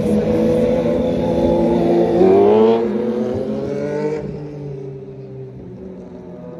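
A motor vehicle engine running loud close by, revving up with a rising pitch about two seconds in, then fading away as it drives off.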